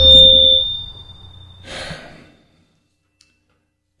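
A high, steady squeal of microphone feedback with a lower tone under it, over a fading low rumble, dying away within about a second and a half. A brief rush of noise follows about two seconds in, then dead silence.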